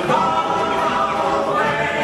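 Animatronic bird show song: a chorus of voices singing together over music, played through the attraction's sound system.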